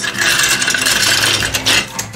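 Clear plastic bag crinkling as hands dig into it and pull out a sprue of plastic model-kit parts. The crinkling stops shortly before the end.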